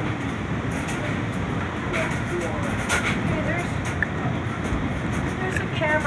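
Strong gusty wind blowing on the microphone with choppy lake waves breaking and splashing against a wooden dock, a steady rushing noise; faint voices call out over it.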